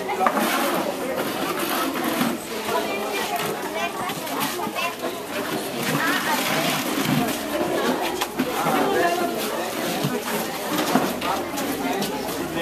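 Overlapping chatter of schoolchildren and adults, many voices talking at once with no single clear speaker, with a few light knocks mixed in.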